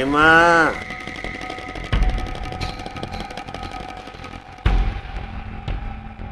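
Dramatic background score: a short pitched swell that rises and falls in the first second, then a sustained drone broken by two heavy low booms, about two seconds in and again near five seconds.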